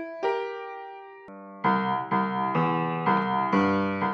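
Upright acoustic piano played: a single chord is struck and left to fade, then a short rock'n'roll lick of repeated chords, about five strikes in two seconds.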